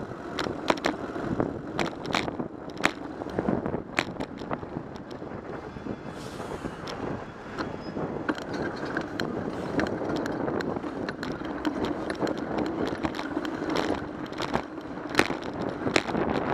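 Bicycle riding in city traffic, heard through a bike-mounted camera: steady road and wind noise with frequent sharp clicks and rattles from the bike and camera mount over bumps, and a brief hiss about six seconds in.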